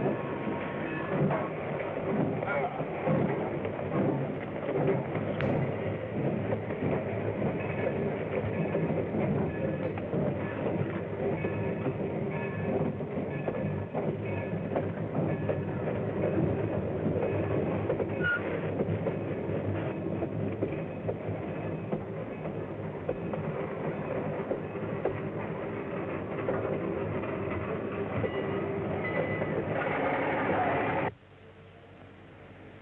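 Steady rumble and clatter of vehicles on the move, running without a break, heard on an old soundtrack that is dull and hissy.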